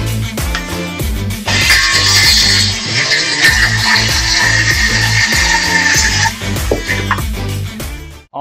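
Background music with a steady beat. About one and a half seconds in, a SKIL 12V brushless 5-1/2-inch cordless circular saw cuts through a sheet of OSB for about five seconds, a high steady whine over the noise of the cut, then stops.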